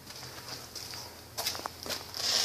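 Faint footsteps on a concrete shop floor with handheld camera handling noise, and a few sharp clicks in the second half.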